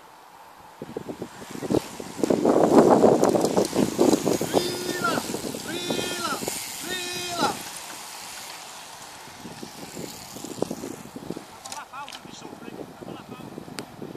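A bunch of track bicycles sweeping past at speed, a rush of tyres and wind that swells to its loudest two to four seconds in and then fades away. Three short shouted calls ring out about halfway through.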